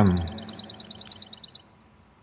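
Faint high-pitched trill of rapid, evenly spaced chirps, about ten a second, stopping about one and a half seconds in.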